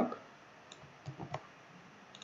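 A few soft clicks of a computer keyboard and mouse, one faint click and then a quick cluster of three about a second in, as a copied colour value is pasted into a code editor.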